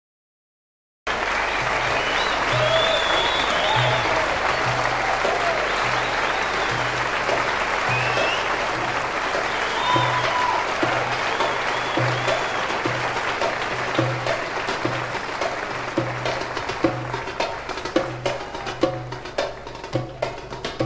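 Concert audience applauding, with whistles and cheers, over a steady low drum beat; it starts abruptly about a second in. Toward the end the applause dies down and sharp hand-percussion strikes come forward as the band's intro takes over.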